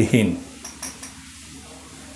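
A man's speech trails off in the first half-second, leaving a faint steady room hum with two brief light clicks shortly after.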